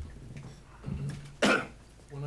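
A single sharp cough about one and a half seconds in, just after a brief, softer throat sound.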